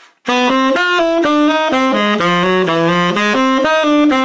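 Tenor saxophone playing a jazz bebop eighth-note phrase from about a quarter second in. The notes are tongued on the upbeats and slurred into the downbeats (mainstream articulation).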